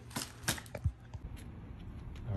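A few light clicks and a soft low knock a little before the middle, the sound of things being handled.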